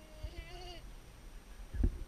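A single short, wavering bleat from a livestock animal, followed near the end by a dull thump.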